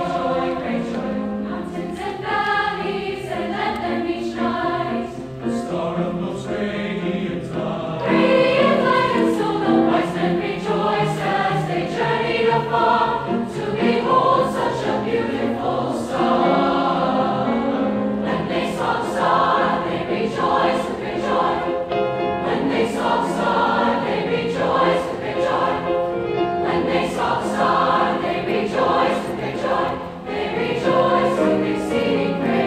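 Mixed choir of male and female voices singing with grand piano accompaniment, the singing swelling louder about eight seconds in.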